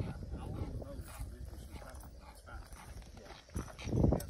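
Quiet, indistinct talking over light shuffling and crunching on gravel, with a louder stretch of voice near the end.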